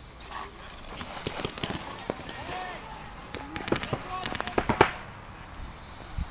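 Paintball markers firing, an irregular run of sharp pops from about one to five seconds in, mixed with shouting voices.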